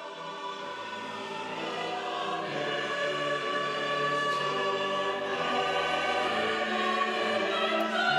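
Mixed choir of men's and women's voices singing slow, sustained chords, fading in and swelling over the first few seconds, then holding steady.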